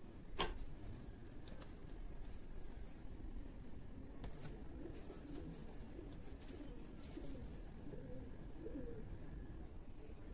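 Faint, low, wavering cooing of a pigeon-like bird, heard mostly in the second half. A sharp click comes about half a second in, with a few softer taps after it.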